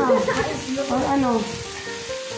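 Pork sizzling on a tabletop samgyupsal grill, a constant frying hiss, with voices over it for most of the first second and a half.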